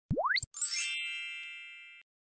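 Sound effects for an animated YouTube subscribe button: a quick upward swoop in pitch, then a bright shimmering chime about half a second in that rings and slowly fades before stopping abruptly.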